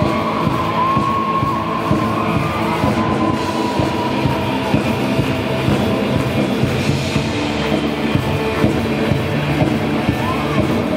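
Live rock band playing: amplified electric guitars and a drum kit, with a held note that bends in pitch in the first few seconds.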